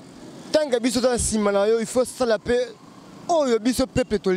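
A man speaking into a handheld microphone in two stretches with a pause between, with faint street traffic noise underneath.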